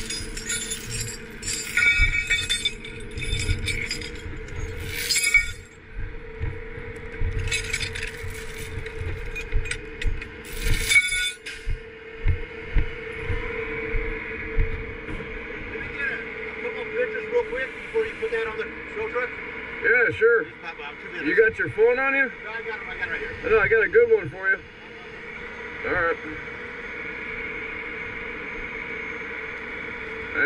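Steel tow chains with J-hooks clinking and rattling as they are gathered up and handled, in quick runs of sharp metallic clinks for the first twelve seconds or so, over a steady hum. After that the chain stops and voices take over.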